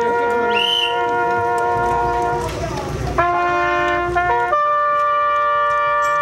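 Street brass band holding long sustained notes. After a short break it moves to a new pitch about three seconds in, and shifts again about a second and a half later.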